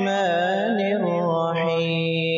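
A man's voice reciting the Quran in a slow, melodic qira'at chant. It is one long ornamented phrase whose pitch winds up and down, then settles into a held note near the end.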